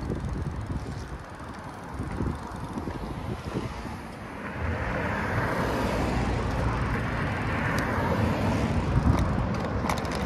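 Street traffic on a city road: vehicle engine and tyre noise, quieter at first and growing louder about halfway through as a vehicle passes close by.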